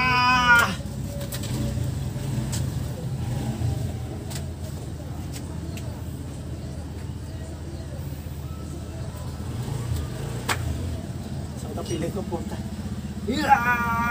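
A man's long, drawn-out yell that breaks off about half a second in, then a steady low hum with a few faint clicks, and a second loud shout near the end.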